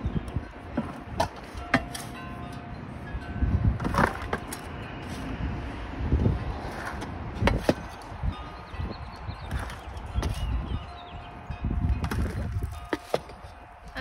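A plastic scoop digging into a loose potting mix of compost, vermiculite, perlite and peat moss and tipping it into a plastic five-gallon bucket: irregular scrapes, rustles and light knocks.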